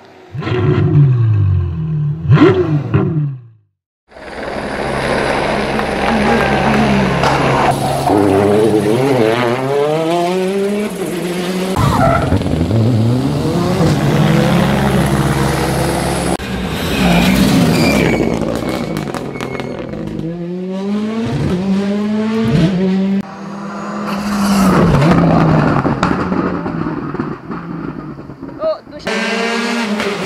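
A short revving sound effect with falling pitch opens, cut off by a brief silence just before four seconds in. Then rally car engines run hard on a tarmac special stage, the pitch climbing and dropping repeatedly through gear changes as the cars approach and pass.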